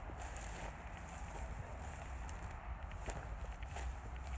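Footsteps through dry, matted grass: a few scattered irregular crunches and rustles over a low steady rumble of wind on the microphone.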